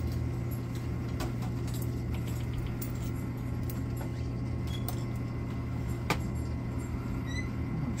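Quarter pusher arcade machine running with a steady low hum, with faint scattered clicks and clinks of quarters and one sharper click about six seconds in.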